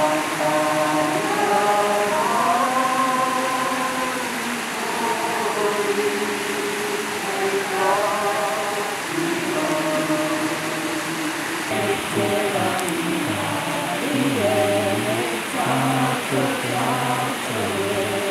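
A group of people singing a Māori waiata together, many voices holding long, slow notes with low and higher voices at once. A steady rush of river water lies underneath.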